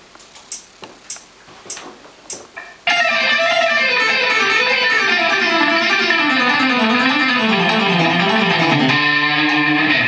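Four evenly spaced metronome clicks count in. About three seconds in, an electric guitar starts a loud, rapid alternate-picked run, six notes to each beat, played dry through a tube amp with no echo, reverb or delay. The run winds steadily downward and ends on a held low note near the end.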